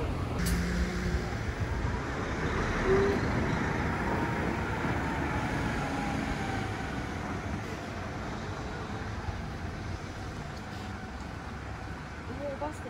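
Outdoor traffic noise: a road vehicle passing, a rushing sound that swells about three seconds in and slowly fades, with a faint falling whine.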